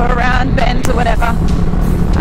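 A person's voice over the steady low rumble of a Kawasaki Vulcan S parallel-twin engine and wind noise while riding at cruising speed.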